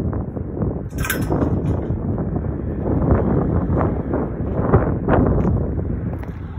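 Wind rumbling and buffeting on a phone's microphone, with irregular scuffs of footsteps on dirt and gravel, and a brief sharp rustle about a second in.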